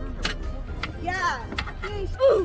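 A short exclamation from a person's voice about a second in, over a steady low rumble, with a few sharp clicks.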